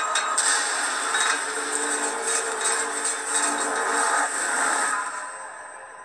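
Harsh, grating film sound design with a steady low drone under it. It is loud, then fades away over the last second or so.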